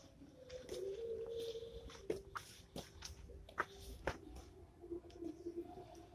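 Faint low cooing bird calls that waver and come and go in several stretches, with scattered light clicks and taps.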